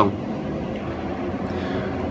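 Steady background noise, an even low rumble with some hiss and no distinct events.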